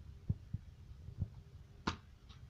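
Plastic DVD case being handled: a few soft low thumps, then one sharp plastic click near the end as the case is opened.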